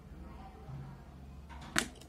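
A wall-mounted rocker light switch being flipped off: one sharp click near the end.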